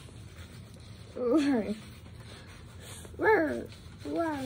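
A dog whining: two short whines, each rising and falling in pitch over about half a second, about two seconds apart.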